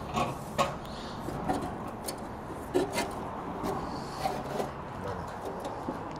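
Scattered light metallic clicks and taps from handling the steel blades and hub of a stationary crusher rotor, over a low steady background noise.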